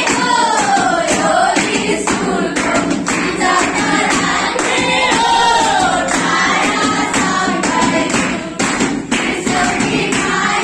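A class of schoolchildren singing a Nepali song together, clapping their hands along to the beat.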